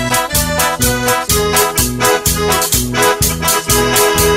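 A band playing an upbeat instrumental passage: an electronic keyboard melody over bass and a drum kit with a steady, quick beat.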